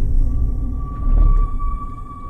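Film-trailer score and sound design: a deep, rumbling low drone with a thin, steady high tone held above it, joined by a fainter second high tone about halfway through.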